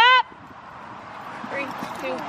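A short, loud honking bird call right at the start, then a fainter call near the end, over low background noise.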